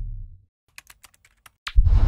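A low music ending fades out, then near silence broken by a short run of light, sharp clicks like typing, and a louder sharp hit just before the end.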